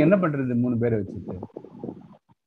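A man's voice making a drawn-out sound with no words, held for about the first second, then softer broken vocal sounds.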